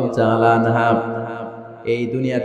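A man's voice preaching in a drawn-out, chant-like sing-song, holding long notes, then trailing off near the end.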